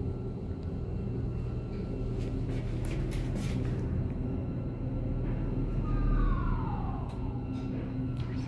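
1978 SÛR SuperSûr traction elevator car travelling up the shaft: a steady low rumble and hum from the car and its machine, with a few clicks about three seconds in and a whine that falls in pitch over about a second near the end.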